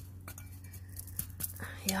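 A few light, scattered clicks and taps from handling things while planting in garden soil, over a steady low hum. A short spoken 'yeah' near the end.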